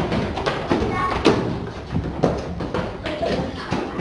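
Footsteps of a class of schoolchildren walking in formation: many irregular taps and thuds, several a second, with scattered children's voices among them.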